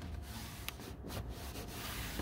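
Hands rubbing and brushing across a carpeted car trunk floor panel, a faint scuffing with one small click under a second in.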